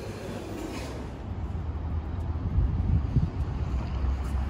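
Outdoor city street noise: a steady low rumble with irregular low thumps, growing louder about a second in.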